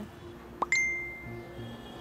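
A quick rising swish leads into a single bright, bell-like ding about half a second in, which rings on and fades over about a second, above faint steady background tones.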